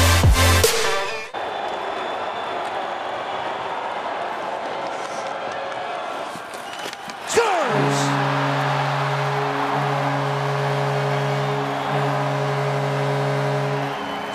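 Bass-heavy electronic music cuts off about a second in, leaving an arena crowd cheering after a goal. Midway through, a steady multi-note goal horn starts and keeps sounding over the cheering.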